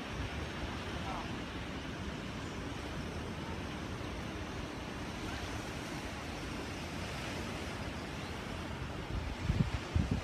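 Steady wash of surf on a beach with wind on the microphone. A few low thumps come near the end.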